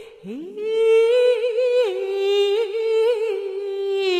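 Yue opera singing: a woman's voice slides up into a long held note with vibrato, then steps down to a lower note about two seconds in and holds it.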